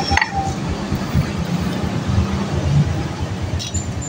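Steady low rumble of a motor vehicle running in the background, with a short metallic clink near the start.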